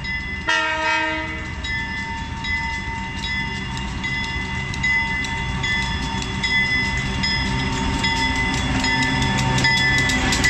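Canadian Pacific diesel freight locomotive approaching: a short chord blast on its horn about half a second in, a bell ringing about once a second throughout, and engine rumble that grows steadily louder as the locomotive draws up and passes.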